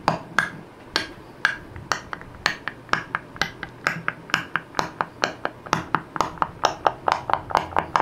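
Sharp clicks made into a wireless karaoke microphone and played through an SDRD SD-305 karaoke speaker with its echo turned up, each click followed by a short fading tail. They come in a steady train that quickens to about five a second.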